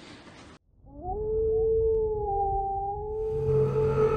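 A single long wolf howl sound effect: it rises at first, then holds on one pitch. A hiss and a low hum join it near the end.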